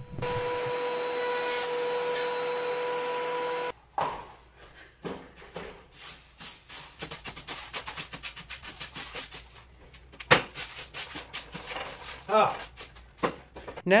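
DeWalt benchtop thickness planer running with a steady hum, cutting off abruptly after almost four seconds. Then comes a rapid, irregular jumble of clicks and knocks.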